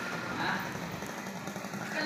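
Fish-market ambience: faint voices, one briefly a little louder about half a second in, over a steady low mechanical hum.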